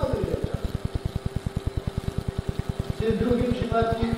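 An old 1993 tape recording of voices singing, with long held notes near the end, under a fast, even low thumping of about ten beats a second that runs through the recording as a fault.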